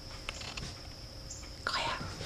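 A puppy chewing and tugging at a plush toy on towels in a wire crate: small clicks and soft rustling, then a louder scuffle of fabric and toy about a second and a half in.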